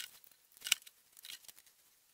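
A few short, sharp clicks and light rustles from a USB cable being handled and its connector pushed into a smartphone's charging port, the loudest click a little under a second in.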